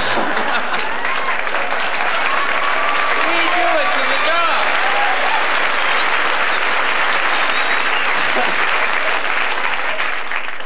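Live theatre audience applauding, a dense, steady wash of clapping. Individual laughs and calls stand out from the crowd in the middle.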